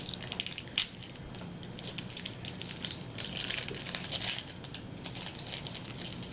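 A small plastic wrapper crinkling as it is worked open by hand, in repeated short bursts of crackle.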